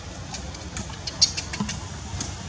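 Infant long-tailed macaque giving a few short, high-pitched squeaks in quick succession, the loudest about halfway through, over a steady low rumble.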